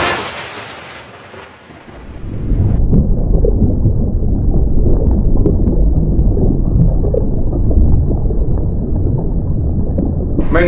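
The music fades out over the first two seconds, then a loud, steady, deep rumbling sound effect sets in, with nothing above its low range.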